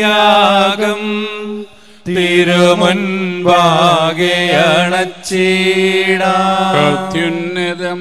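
Sung liturgical chant in Malayalam over a steady held note that sounds underneath it. The singing and the held note break off briefly just before two seconds in, then resume.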